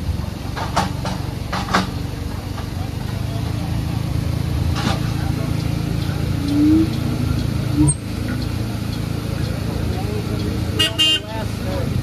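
Forklift engine running steadily, revving up briefly about halfway through as the giant pumpkin is set down on the scale. A few knocks early on, and a brief high-pitched toot near the end.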